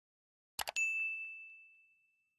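Two quick mouse-click sound effects, followed at once by a single bright bell-like notification ding that rings out and fades over about a second and a half: the effect for the notification bell being clicked in a subscribe-button animation.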